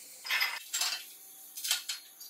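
Steel parts of a homemade tool (perforated steel channel pieces and fittings) clinking and scraping against each other and the steel table top as they are handled and fitted together, in three short clatters.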